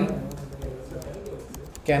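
Computer keyboard being typed on: a few faint key clicks between pauses in speech.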